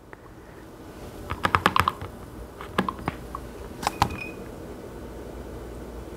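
A quick run of light clicks about a second and a half in, then a few single clicks, over a low steady room hum.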